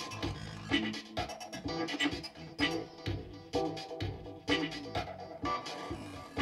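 Live electronic music from a performer's table of electronic gear: a looping rhythmic pattern of short, plucked-sounding pitched stabs, with a loud hit about once a second over a low bass bed.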